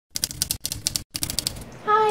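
Typewriter keys clacking in quick runs of sharp strokes, about eight a second, with two short breaks about half a second and a second in.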